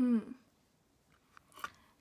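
A woman's short hummed "hmm" falling in pitch at the start, then quiet with a few faint clicks.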